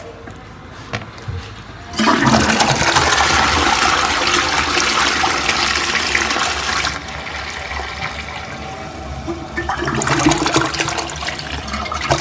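Toilet flushing: a sudden loud rush of water starts about two seconds in, eases after about five seconds, then swells again near the end.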